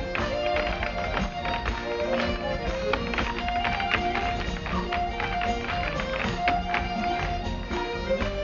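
Live Celtic folk music led by Highland bagpipes, with a steady drone under the melody, backed by guitar. Over it run rapid, rhythmic hard-shoe taps of step dancers striking the stage.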